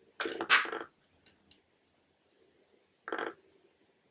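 Handling noise from a compact makeup palette being moved and set aside: a short clatter just after the start, a couple of faint ticks, then a brief, softer noise about three seconds in.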